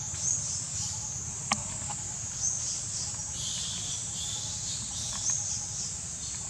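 Steady high-pitched drone of insects, with a few short chirps over it and a sharp click about one and a half seconds in.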